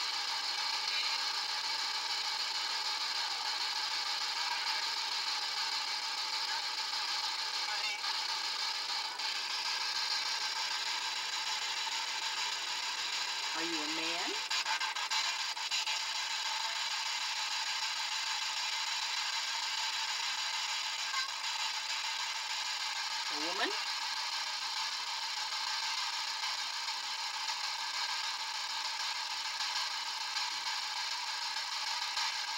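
Steady hiss of background noise laced with faint steady tones, broken twice by a brief rising sound like a short vocal fragment, once about halfway through and once about three quarters through. No alarm tones come from the REM-Pod.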